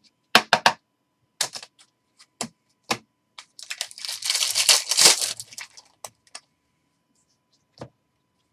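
Trading cards and rigid plastic card holders clicking and tapping as they are handled, a few sharp clicks in the first three seconds. Then, about three and a half seconds in, a foil card pack wrapper is torn open, with about two seconds of crinkling, the loudest part.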